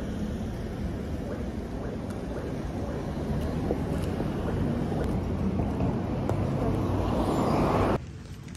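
Street traffic passing a kerbside microphone: a steady rumble of car tyres and engines, growing louder toward the end as a vehicle draws near.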